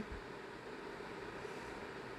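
Faint steady hiss of background noise, with no distinct events.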